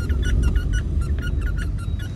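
A quick run of short squeaks, about six a second, over the steady low rumble of a car cabin.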